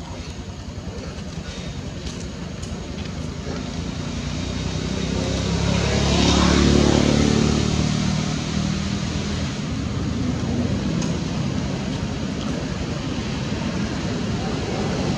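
A motor vehicle passes by: its engine and road noise swell to a peak about halfway through, then fade away.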